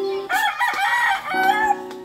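A rooster crowing once, one long call of about a second and a half that is the loudest sound here, with a low steady tone beneath its second half.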